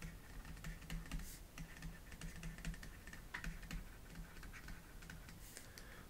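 Faint, irregular ticks and taps of a stylus on a pen tablet as words are handwritten.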